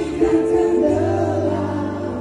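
Several voices singing together into microphones over amplified musical accompaniment, holding long notes over a steady bass.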